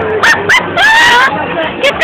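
A young man yelling in a string of short, high-pitched cries, with one longer cry about a second in, as he reacts to a lemon-laced drink. Crowd chatter runs underneath.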